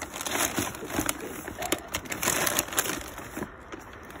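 Bags of hamster food crinkling and rustling as a hand rummages through them, in a quick run of irregular crackles that dies down about three and a half seconds in.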